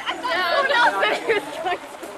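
A group of people talking over one another in lively chatter.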